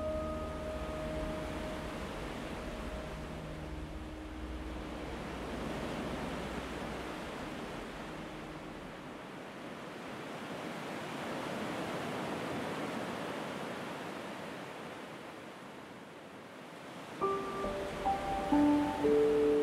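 Ocean waves washing ashore in slow swells that rise and fall. The last held notes of a gentle piano piece die away in the first few seconds, and a new piano piece begins near the end.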